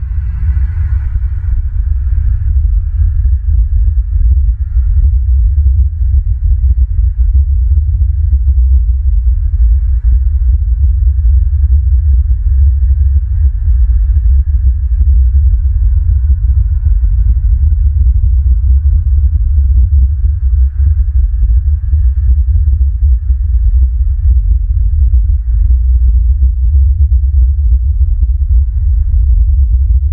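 Loud, steady low rumble that flutters irregularly, typical of wind buffeting an outdoor camera microphone.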